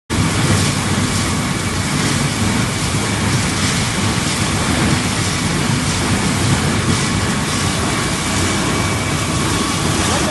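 Wood pellet mill running steadily as it produces pellets: a loud, even mechanical noise with faint steady tones running through it.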